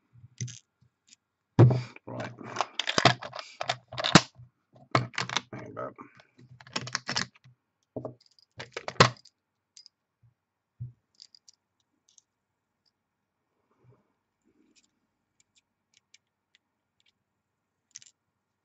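Quick clicks and taps of small brass and copper parts of a mechanical vape mod's switch being handled and fitted on a mat, a dense run through the first half, then only a few faint ticks.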